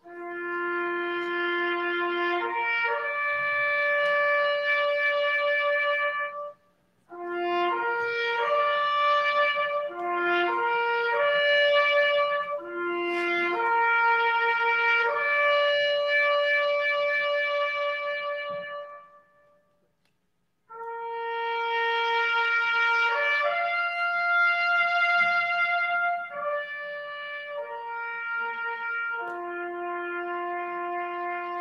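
Solo trumpet playing a slow military bugle call in long held notes, with brief pauses for breath.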